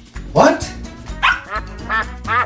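A puppy barking: one rising bark about half a second in, then a quick run of short, high yips, over background music.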